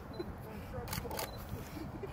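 Two quick camera shutter clicks about a second in, a fraction of a second apart, from a photographer's DSLR.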